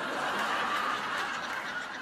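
A studio audience laughing together, a steady wash of crowd laughter that eases off slightly near the end.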